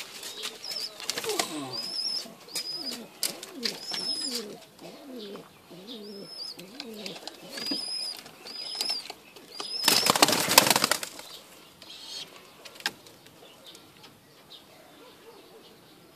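Domestic pigeons cooing, with repeated low rising-and-falling coos through the first half, short high chirps repeating about once a second, and a loud burst of wing flapping about ten seconds in.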